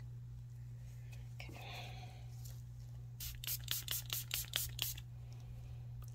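A spray bottle of rubbing alcohol spritzed over freshly poured resin: a rapid run of about ten short hissing sprays, roughly five a second, lasting about two seconds.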